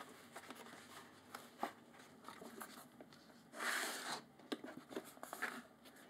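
Sheets of stiff board handled and laid flat over a cloth-covered hardcover book: soft taps and knocks, with a louder sliding rasp of board on board about three and a half seconds in.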